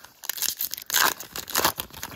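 Foil baseball-card pack wrapper being torn open and crinkled by hand, in three short crackly rustles.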